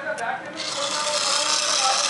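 Toy airboat's small solar-powered DC motor and plastic propeller starting up: after a couple of clicks from handling the wires, a steady whirring hiss with a faint high whine sets in about half a second in.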